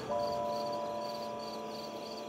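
Crickets chirping at night in an even rhythm, about three chirps a second, with held low notes of background music coming in just after the start.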